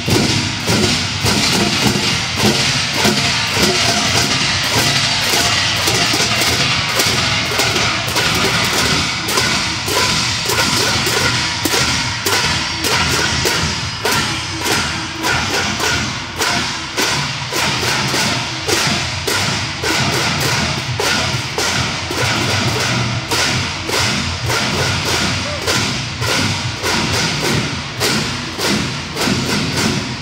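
Parade drums, round hand-held drums beaten with sticks by marching performers, playing a loud, steady, driving rhythm of repeated strikes.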